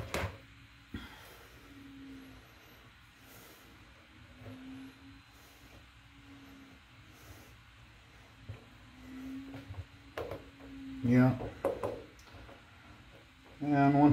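Quiet hand handling of FEP film and a resin vat frame: a couple of light taps at the start, then soft contact sounds as the film is positioned. A brief bit of voice comes a little before the end.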